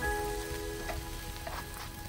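Sliced onions sizzling as they fry in a pan over a campfire, with a couple of short scrapes from a wooden spatula stirring them. Background music with held chord tones plays over it.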